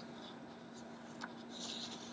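Paper flashcards rustling as they are handled, a few short rustles with the longest near the end, over a faint steady hum.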